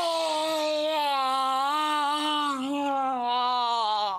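A boy letting out one long, held yell of stress and frustration, the pitch steady then sagging slightly before it cuts off.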